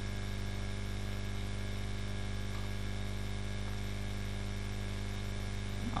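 Steady low electrical hum with a faint hiss underneath, unchanging throughout: mains hum picked up in the recording chain.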